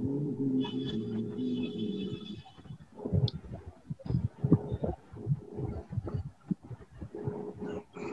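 Garbled, breaking-up video-call audio. A low, wavering murmur over a steady hum lasts about two seconds, followed by a run of short low thumps and crackles.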